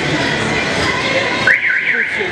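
A warbling, alarm-like electronic tone that rises and falls quickly about three times near the end, over a steady background of ambient noise.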